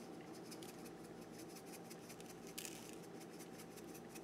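Faint ticking patter of salt grains shaken from a metal salt shaker onto sliced tomato, with one slightly louder shake a little past halfway.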